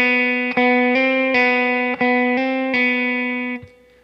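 Aria Mosrite-style electric guitar playing a repeated hammer-on and pull-off on the third string, 4th fret to 5th fret and back (B–C–B), the two notes alternating several times. The index finger stays anchored on the 4th fret so the pulled-off note keeps its true pitch. The playing stops about half a second before the end.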